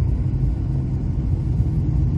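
Steady low rumble of a moving car heard from inside the cabin: engine and tyre noise.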